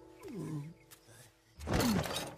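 Cartoon sound effects over background music: a short falling glide about a quarter second in, then near the end a loud, harsh roar-like burst whose pitch falls.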